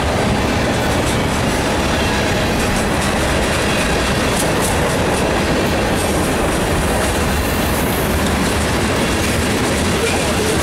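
Freight cars of a mixed freight train, covered hoppers and tank cars, rolling past: a loud, steady noise of steel wheels running on the rails.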